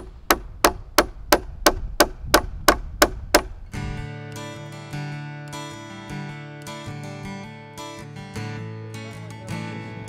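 About eleven evenly spaced hammer strikes on the timber frame, about three a second, for the first four seconds. Acoustic guitar music then takes over.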